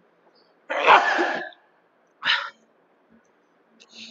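A man coughs twice: a longer cough about a second in, then a short one about a second later.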